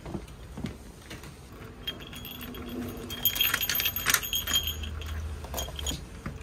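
Keys on a key ring jangling as a key is worked in a door's cylinder lock to unlock it, with a sharp metallic click about four seconds in.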